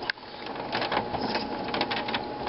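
Hard plastic clicking and scraping as a green plastic expansion-card retention cover in a desktop computer case is pushed and worked by hand; it will not latch into place. Several sharp clicks stand out over a steady rustle.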